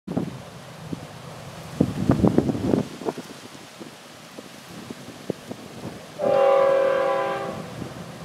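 Florida East Coast Railway freight locomotive's air horn giving one long, steady chord of about a second and a half, about six seconds in. A cluster of low thumps comes about two seconds in.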